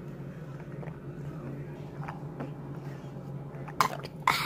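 Steady low electrical hum of an open refrigerator running, with a single sharp click near the end.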